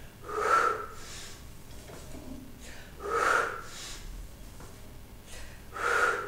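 A man's forceful breathing while doing weighted pull-ups: three loud exhales about three seconds apart, one with each repetition, and quieter breaths in between.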